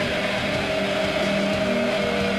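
Live heavy metal band's distorted electric guitars holding a long, steady chord, with no vocals.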